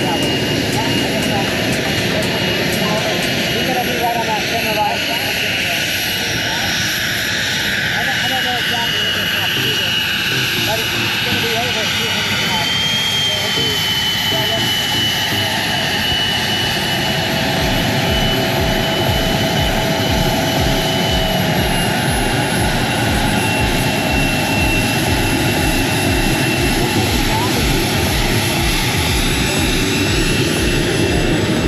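Cirrus Vision Jet's single Williams FJ33 turbofan running as the jet taxis: a loud, steady high whine over a broad rush of jet noise, the whine lifting briefly in pitch about halfway through.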